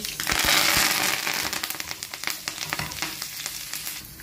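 Fresh curry leaves hitting hot oil with spluttering mustard and cumin seeds: a loud burst of sizzling that is strongest in the first second or so and then settles, with crackling pops throughout.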